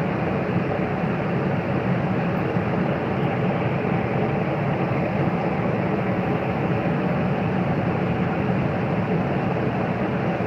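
Steady rushing noise inside an enclosed Ferris wheel gondola as the wheel turns slowly, even and unchanging throughout.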